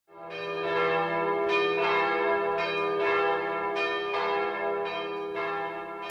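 Bell-like chime music: ringing tones struck roughly once a second over a low sustained drone, easing slightly near the end.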